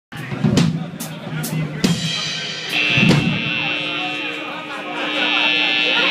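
Loose single hits on a rock drum kit, about six strikes on drums and cymbals in the first three seconds. Then a steady high-pitched ringing tone from the stage amplifiers holds, with voices under it.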